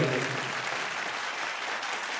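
Audience applauding: many people clapping in an even, steady patter, with the last of a man's sung 'hey' just at the start.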